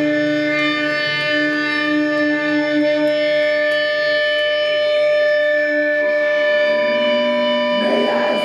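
Distorted electric guitars through amplifiers sustaining a steady, droning chord, several held tones ringing without drum hits, in a live black/death metal set.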